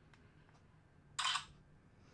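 Image-capture sound of a Silhouette Star wound-imaging camera as it takes a picture: a single short sound, about a third of a second long, a little past a second in, against quiet room tone.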